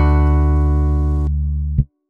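Music ending: the final chord of a song, played on guitar over a low bass, rings out and slowly fades. A short low final hit comes near the end, then the sound cuts off.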